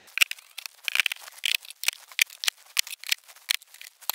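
Wooden beehive frames clicking, knocking and scraping against each other and the hive box as they are pushed into a packed super. One frame is jammed in so tightly that its wooden lug breaks.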